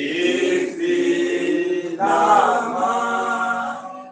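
A group of voices singing a slow hymn or chant in long held notes. A new phrase begins about halfway through, and the singing fades out near the end.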